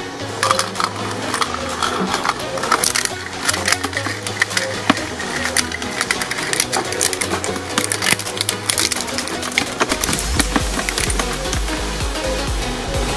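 Background music with a steady beat over a twin-shaft shredder's steel cutters crunching and cracking a plastic toy figure, with many sharp snaps, densest in the first half.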